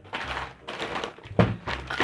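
Plastic snack packets rustling as one is grabbed and lifted out of a pile, with a sharp thunk about one and a half seconds in.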